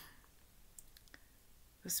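A pause with a few faint, short clicks near the middle, then a woman starts speaking again just before the end.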